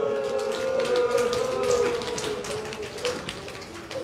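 Mourners weeping aloud. One long wailing voice is held for about two seconds and fades, over many short, irregular sharp sounds.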